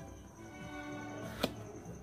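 Cardboard product box being opened by hand, with one sharp snap of the end flap coming free about one and a half seconds in, over faint background music.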